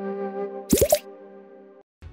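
Logo-intro music: a held synth chord with a short cluster of quick upward-gliding sound effects about three-quarters of a second in. The chord cuts off just before the end.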